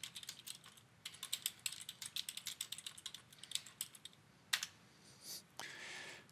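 Computer keyboard being typed on: quick runs of faint key clicks for about four seconds, then a single louder click a little later.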